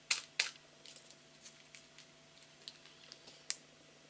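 Stiff plastic packaging of a metal cutting die being handled: two sharp clicks right at the start, scattered small ticks and crackles, and one more sharp click near the end.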